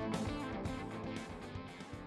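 Instrumental guitar music fading out, steadily getting quieter as the track ends.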